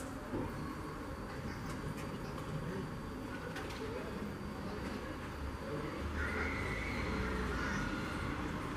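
Quiet background noise: a low steady rumble with a few faint calls, one lasting about two seconds near the end.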